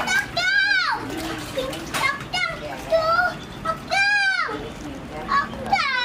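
Three short high-pitched cries, each rising and then falling in pitch, with water sloshing underneath.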